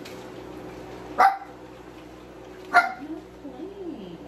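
A dog barking twice, two short barks about a second and a half apart, over a steady background hum.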